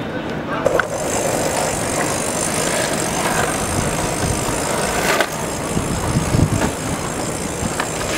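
Longboard wheels rolling over paving stones, a steady rumble and hiss, with one sharp knock about five seconds in.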